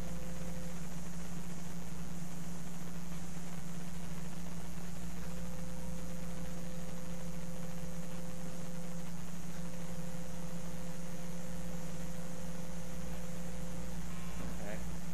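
Steady electrical hum with an even hiss over it, and a faint thin higher tone that drops out for a few seconds near the start and again briefly past the middle.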